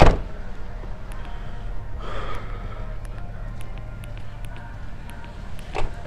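A dumpster lid slamming shut with one loud bang, over a steady low hum. A brief rustle follows about two seconds in, and a smaller knock near the end.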